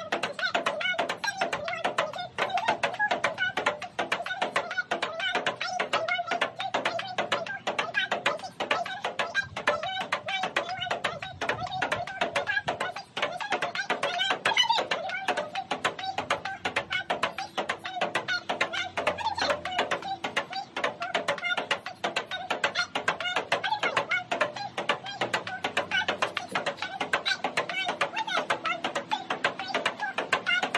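Ping pong ball in a long rally against a table half folded up as a backboard: quick, evenly alternating clicks of the ball off the bat and off the table top, about four a second, without a break.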